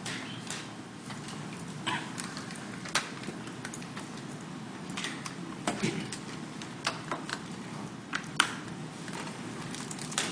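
Lecture-hall room noise with about a dozen scattered small clicks, taps and rustles from students working at their desks.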